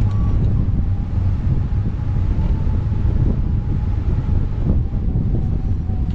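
Airflow buffeting the microphone of a glider-mounted camera in flight, a steady loud rumble. A faint thin tone sits underneath and drifts slowly lower in pitch.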